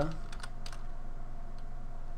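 A few scattered keystrokes on a computer keyboard as code is typed, sharp separate clicks with gaps between them.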